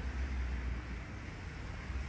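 Low rumble and steady hiss of handling and wind noise on a handheld microphone being moved; the rumble fades about a second in.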